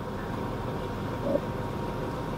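A vehicle engine running steadily in the background, an even low hum that does not change, with a faint steady tone above it.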